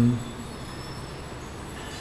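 A man's short "hmm?" at the very start, then steady background room noise, an even hiss with a faint high whine, until speech resumes.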